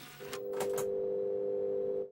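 Logo sting sound effect: a few quick clicks, then a steady held electronic chord that cuts off suddenly at the end.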